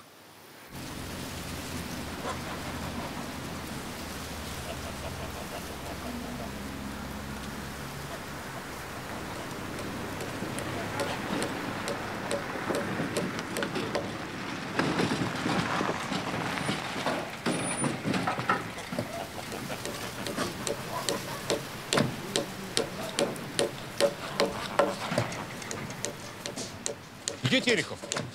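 A light flatbed truck's engine running as it drives up. From about halfway through, repeated hammer blows on timber come in, growing louder and more frequent towards the end.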